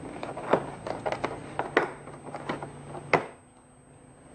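Plastic-and-metal clicks and knocks of hand tools being handled in a hard plastic tool case, as a pair of scissors is pulled out of its moulded slot. The sharpest knocks come about half a second in and a little after three seconds, then it goes quieter.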